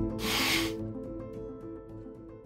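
Background music fading down, with a short hissing slurp about a quarter second in as a sip of coffee fluid gel is drawn from a small glass cup.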